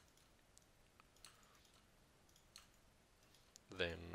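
A few faint, scattered computer mouse clicks over quiet room tone.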